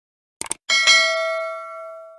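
Sound effect of a subscribe-button animation: a quick double mouse click, then a bright bell ding that rings and fades out over about a second and a half.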